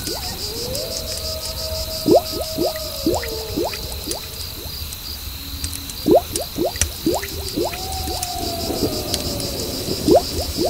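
A recorded sleep soundscape: clusters of short, quickly rising bubble bloops over a steady, evenly pulsed chirping of crickets. A low hum runs underneath, and two long gliding tones are held for a few seconds, one soon after the start and one near the end.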